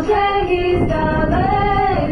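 A group of female voices singing a Ukrainian Christmas carol together, drawing out long held notes; in the second half one long note swells up and falls away.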